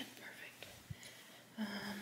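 A woman whispering quietly, ending in a short held syllable.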